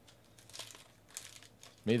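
Foil trading-card pack crinkling as it is handled, in short irregular crackles from about half a second in. A man's voice starts just before the end.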